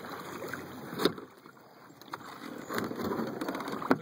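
Paddler settling into a plastic Old Town Predator 13 fishing kayak: a sharp knock against the hull about a second in, then a paddle dipping and splashing in the water during the last second or so.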